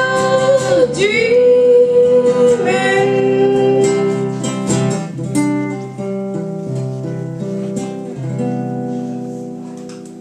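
Acoustic guitar strummed under female singing, with long held notes that bend in pitch over the first few seconds. The voice then drops out and the guitar rings on more and more quietly as the song winds down to its end.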